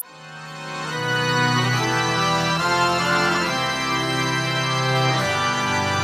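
Live band's instrumental intro: sustained organ-like keyboard chords that fade in over about the first second and shift slowly, after a short click at the very start.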